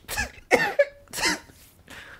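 A man laughing in three short, breathy bursts about half a second apart, trailing off toward the end.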